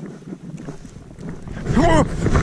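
Footsteps crunching in snow, then, about a second and a half in, a short rising-and-falling cry from the walker and a loud rush of noise as a dog tackles him into the snow.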